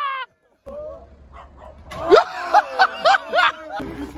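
Men's voices letting out short, sharply rising yelps and laughs in quick succession, with wind rumbling on the microphone. The sound cuts out briefly just after the start.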